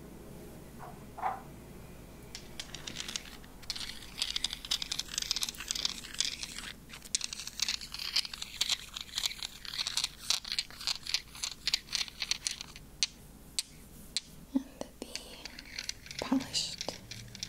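Fingers and nails handling a small crystal stone close to the microphone, rubbing and tapping it: a dense run of quick crackling clicks that builds a few seconds in and thins out near the end.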